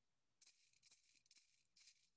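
A maraca shaken four times, heard as faint, short rattles about half a second apart.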